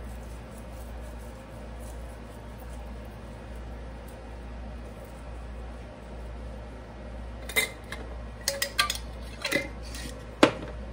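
Kitchen room tone with a low steady hum, then a few sharp clinks and knocks of kitchenware being handled: one about seven and a half seconds in, then a quick cluster of several near the end.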